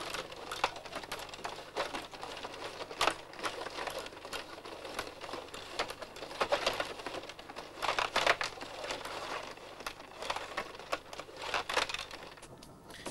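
Pola 500 Super Hockey rod table hockey game in play: a rapid, uneven clatter of plastic clicks and rattles from the rods being pushed and spun and the puck striking the figures and boards. Sharper knocks stand out about three seconds in, twice around six to eight seconds, and near the end.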